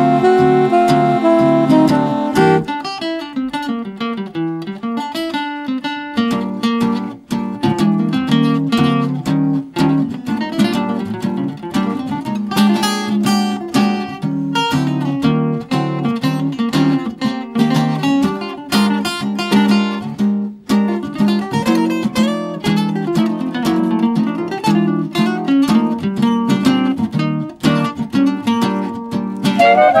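Swing jazz guitar solo of quick plucked single-note runs and chords. It takes over from a reed instrument's held phrase about two and a half seconds in, and runs until the reeds come back right at the end.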